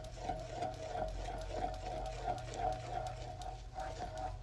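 Wooden spatula stirring and lightly scraping thick melted caramel in a nonstick saucepan, with faint irregular scrapes over a steady mechanical whirring hum.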